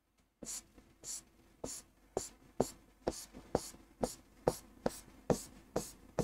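Marker pen drawing quick short strokes on a writing board, about two scratchy strokes a second, as small needle leaves are sketched one after another.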